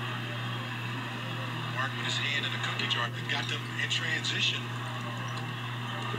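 Basketball game broadcast audio playing at low level: faint commentator speech over a steady low hum.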